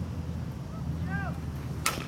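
A baseball bat hitting a pitched ball: one sharp crack near the end, over a steady low hum.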